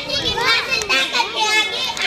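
A girl giving a speech in Urdu into a microphone, talking continuously with an impassioned delivery.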